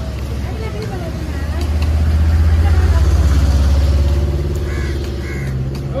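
A motor vehicle's engine running close by, a steady low hum that swells for about two seconds in the middle and then eases off. Voices talk underneath it.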